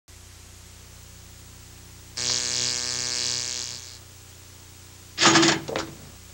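Steady mains hum on the old videotape's sound track. About two seconds in, a steady pitched tone with a buzzy edge sounds for about a second and a half and fades. Near the end, a short loud sound comes and goes.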